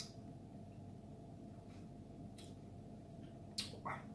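Quiet room tone with a steady faint electrical hum and a few soft clicks; near the end a sharper click followed by a brief short noise, likely a mouth sound from tasting the whisky.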